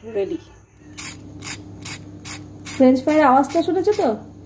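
Fried potato fingers tossed in a steel bowl: a run of quick, sharp rattling clicks lasting under two seconds. A voice follows near the end and is louder than the clicks.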